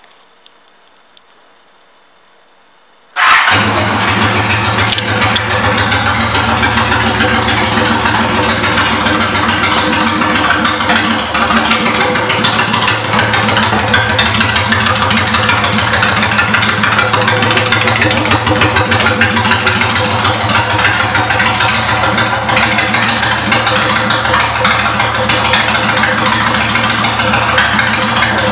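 2002 Honda Shadow 750 Ace's V-twin engine with aftermarket exhaust pipes starting about three seconds in, then idling steadily and loudly.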